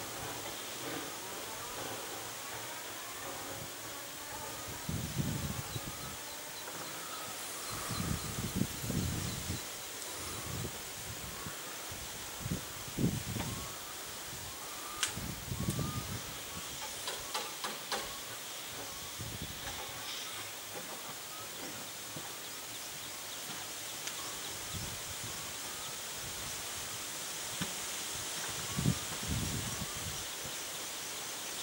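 Distant narrow-gauge steam locomotive moving slowly closer, with a steady hiss of steam over outdoor ambience. A few low rumbling gusts come through, along with faint short chirps repeating throughout.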